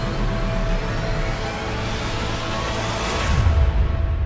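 Dramatic stage intro music with a low rumble, building through a rising whoosh to a deep hit near the end.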